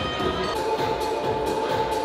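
Background music with a steady beat; a held note comes in about half a second in.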